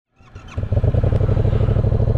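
Yamaha MT-07 parallel-twin engine running steadily through a drilled-out exhaust, a deep, even pulsing rumble. It fades in from silence over the first half second.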